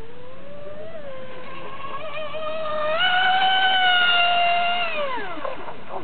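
Radio-controlled model speedboat's motor whining at high pitch. The pitch climbs over the first few seconds, holds high and loudest for about two seconds, then drops steeply near the end as the boat comes off the throttle.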